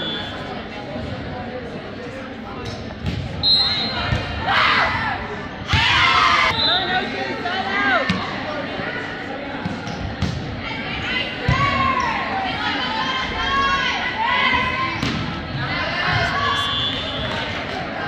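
Indoor volleyball rally: the ball struck and hitting the floor, sneakers squeaking on the hardwood court, and players and spectators calling out, all echoing in a large gymnasium.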